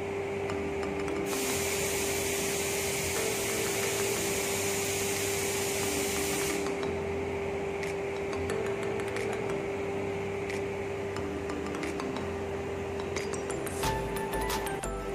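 A loud hiss of pressure escaping from a PVC union ball valve on a water-filter line as it is worked open. The hiss starts sharply about a second in and cuts off about five seconds later, over a steady hum that runs throughout.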